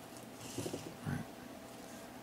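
Mostly quiet room tone with a faint, brief rustle of hands handling small plastic parts on paper, and one short spoken word about a second in.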